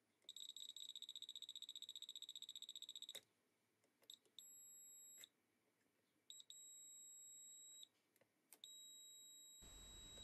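Faint beeper of an Agilent U1273AX multimeter in its diode/continuity test: a rapid pulsing beep for about three seconds, then three steady high beeps of about a second each as the probes touch the circuit board, with small clicks of probe contact.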